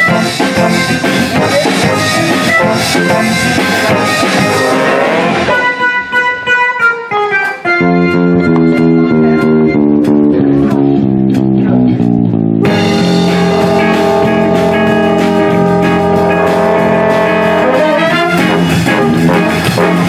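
Big band playing a swing tune with saxophones, trumpets and trombones. About six seconds in the horns drop out for a short guitar break of stepping single notes, and the full band comes back in about seven seconds later.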